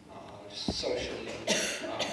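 A person coughing once, about one and a half seconds in, over indistinct talk in a room, with a sharp click shortly before.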